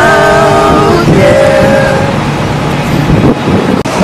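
Male voices singing a cappella in close harmony, holding a closing chord that stops about a second in, with one voice holding a single note a moment longer. After that, only the low rumble of city street traffic is left.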